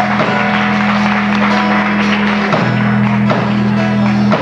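A live rock band playing: electric guitars and bass over a drum kit, with drum hits every second or so.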